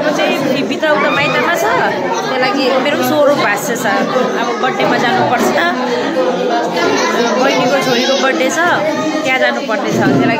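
Speech only: a woman talking close to the microphone over the chatter of many people in a large hall.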